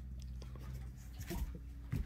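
Faint rustling, with a few light clicks about a second in and near the end, as a German shepherd mouths at shed fur held in a person's fingers, over a steady low electrical hum.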